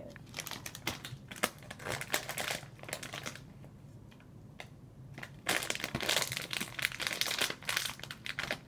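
Plastic Airheads candy bag crinkling as it is handled, in two spells, the second louder and denser, starting about five and a half seconds in.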